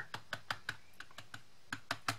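Foam-tipped stylus ink applicator tapping dye ink onto glossy cardstock: a quick run of light taps, about five a second, with a short pause in the middle. The tapping builds up the ink for deeper colour on paper that has gone slick with ink.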